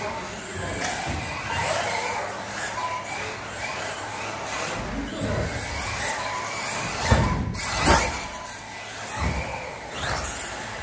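Electric RC touring cars' motors whining, the pitch rising and falling over and over as the cars accelerate and brake around a carpet track. Two loud low thumps come about seven and eight seconds in.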